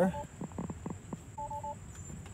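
Three quick two-tone electronic beeps about one and a half seconds in, with a few faint clicks before them.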